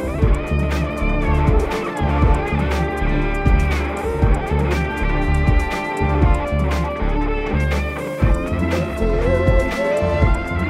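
Live electronic music: a steady drum-machine beat over deep sustained bass, with an electric cello playing lines on top, including some sliding notes near the end.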